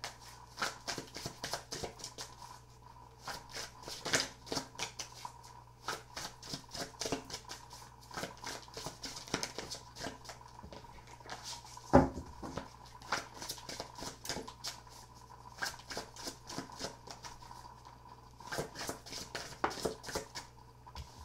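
A deck of tarot cards being shuffled by hand: a long run of quick, irregular card flicks and riffles, with one louder knock about twelve seconds in.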